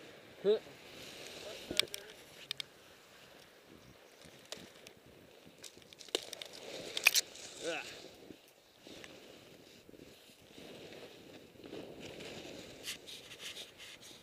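Scraping and crunching in snow with several sharp knocks and clicks, from movement along a snowy trail. A short voiced "huh?" comes just after the start, and another brief vocal sound comes about seven and a half seconds in.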